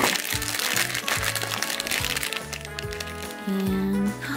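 Plastic blind bag crinkling as it is torn open by hand, mostly in the first half, over background music with a steady beat.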